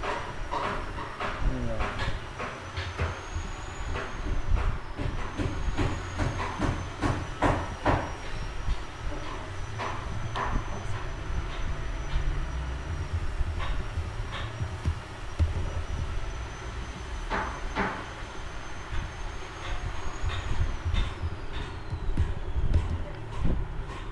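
Computer keyboard keys clicking at an irregular pace, a few strokes at a time, over a steady low background rumble.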